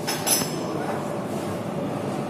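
Metro station background noise, a steady rumble, with one brief sharp clink about a third of a second in.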